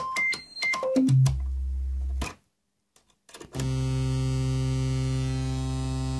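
Freshly built Befaco Even VCO eurorack oscillator giving a steady electronic tone that jumps up octave by octave as its coarse tune knob is turned, then drops back down. The tone cuts out for about a second, then comes back as a low, buzzy tone with many overtones, held steady.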